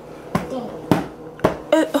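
A toddler slapping her hand on a plastic high-chair tray: three knocks about half a second apart, the middle one the loudest.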